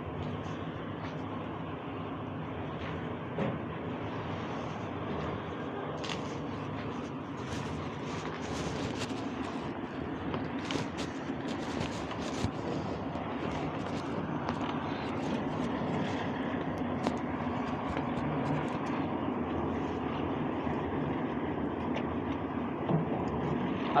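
Steady background noise with indistinct voices, and scattered light clicks and taps through the middle stretch.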